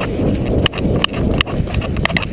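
Rumble of an action camera moving fast over rough concrete, with a sharp knock repeating about two to three times a second.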